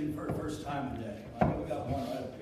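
Indistinct speech with one sharp knock about one and a half seconds in.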